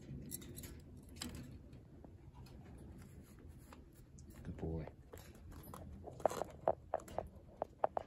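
Quiet, with faint scattered ticks, a brief low voice a little over halfway through, and a run of sharp clicks and crunches in the last two seconds.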